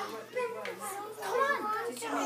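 Young children's high voices chattering and calling out at play, with no clear words.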